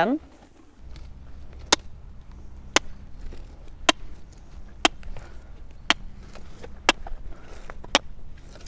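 A sharp click repeated about once a second, seven times, over a low steady rumble.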